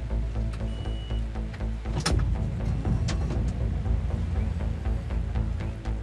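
Background music score with low sustained notes and percussive hits, one strong hit about two seconds in.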